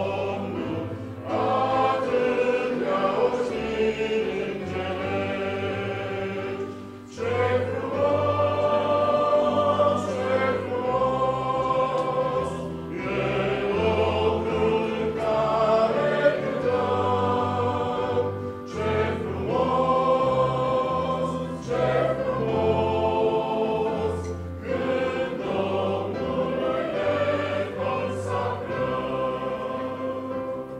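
Congregation singing a hymn in unison with piano accompaniment, line by line with short breaths between phrases; the singing dies away at the very end.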